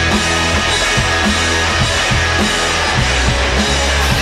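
A live rock band playing: electric guitars, electric bass guitar and a drum kit with cymbals, with a steady bass line and regular drum beat.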